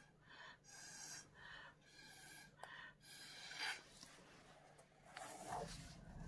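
Faint, short puffs of breath blown through a straw to push wet alcohol ink across the paper, about two puffs a second, thinning out after about four seconds.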